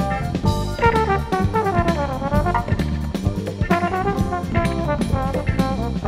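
1981 Japanese jazz-fusion recording with a trombone-led brass line over drum kit and bass. The horn line runs downward through the first couple of seconds, then climbs again, over a steady drum beat.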